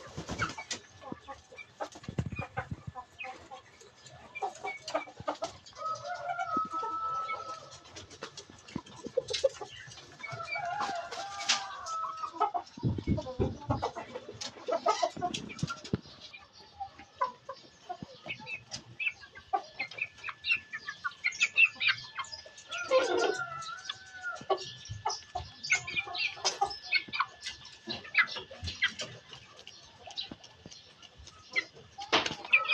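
A flock of chickens clucking and calling, with three longer drawn-out calls standing out: one about six seconds in, one around eleven seconds, and one around twenty-three seconds, and short high peeps clustering near the end. A faint steady high tone runs underneath.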